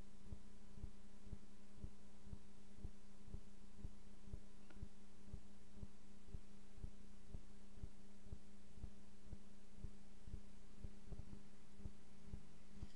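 A steady low hum with a soft, even pulse repeating several times a second.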